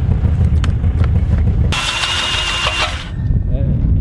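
Snowmobile riding over the ice with a heavy low rumble. About halfway through it gives way abruptly to an ice auger boring into the ice, with a steady high whine.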